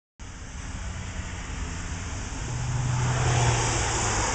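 Motor vehicle engine running, a low steady rumble with a hum that grows louder about halfway through and then eases off.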